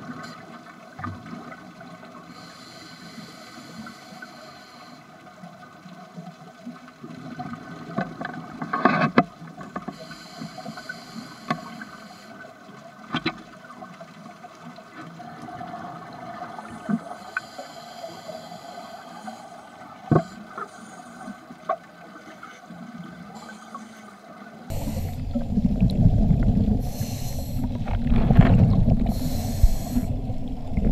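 Underwater sound through a dive camera: scuba divers' exhaled regulator bubbles hiss in bursts every few breaths over a steady low hum, with occasional sharp clicks. About 25 seconds in, a much louder rushing, gurgling water noise takes over.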